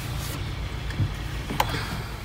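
Low steady rumble inside the cabin of a 2021 Hyundai Tucson, its 2.4-litre four-cylinder engine idling, with a faint short click about one and a half seconds in.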